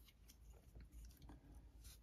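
Near silence with a few faint, soft clicks and rustles of plastic card top loaders being handled.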